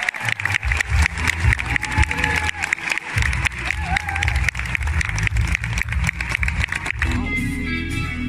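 Concert audience clapping over the band's live walk-on music as the singer comes on stage. About seven seconds in the clapping dies away and the band's music carries on alone, with clear guitar notes.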